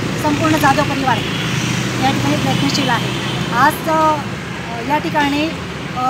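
A woman speaking, in short phrases with brief pauses, over a steady low hum of vehicle engines from the street.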